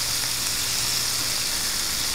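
Small purple and yellow potatoes sizzling in a hot skillet with lemon juice, a steady even hiss.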